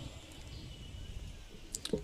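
A pause in a man's speech, holding only faint low background noise, with a few brief clicks near the end just before he speaks again.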